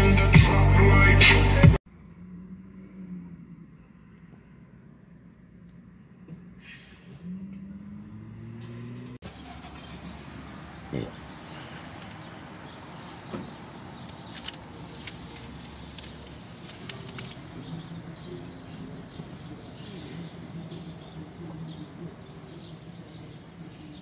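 Electronic music with a heavy beat cuts off abruptly about two seconds in. Faint outdoor street ambience with traffic follows, and a low hum rises in pitch about eight seconds in.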